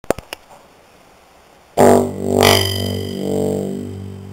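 A low note on a 1981 Rhodes Seventy Three electric piano: the hammer strikes the tine about two seconds in and the note rings on, its loudness swelling again about half a second later. The tine has not yet been fitted with replacement grommets and spring from a tine stabilizer kit.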